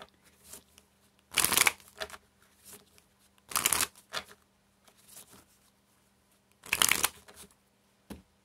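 A deck of Spanish playing cards shuffled by hand: three short bursts of shuffling about two seconds apart, with light taps of the cards between them.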